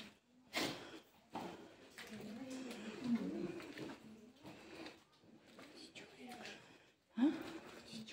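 Low, indistinct voices talking, with a few short sharp sounds near the start.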